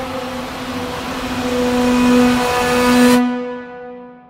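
Intro music holding one long low note with a hissing swell over it; the hiss cuts off about three seconds in and the note fades away.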